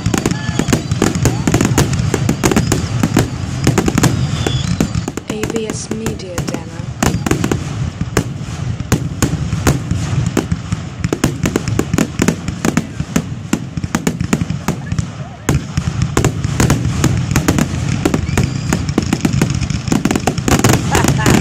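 Aerial fireworks shells bursting in a dense, continuous barrage: rapid overlapping bangs and crackles, several a second, with a brief lull about fifteen seconds in.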